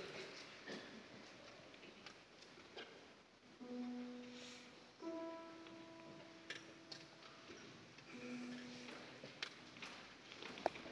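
Single notes played on a grand piano: a lower note about three and a half seconds in, a higher held note a second later, then the lower note again near the end, sounding the choir's starting pitches before they sing. Around them, faint hall room tone with scattered small knocks and rustles from the audience.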